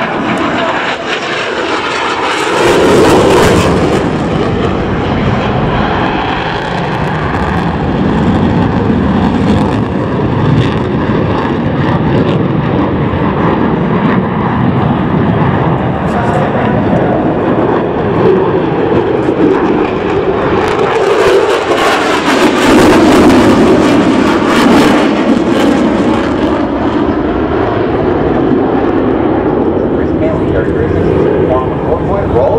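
F-16 fighter jet's engine noise as the jet flies banked, hard-turning manoeuvres overhead. It is a loud, continuous roar that swells about three seconds in and again for several seconds past the twenty-second mark.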